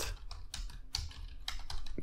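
Computer keyboard typing: a quick, uneven run of keystroke clicks as a line of code is typed.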